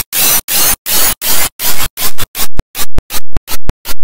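Heavily distorted, clipped audio from an effects edit, chopped into a stutter of harsh noise bursts with silent gaps between them. The bursts come about three a second at first, then grow louder, shorter and faster about halfway in.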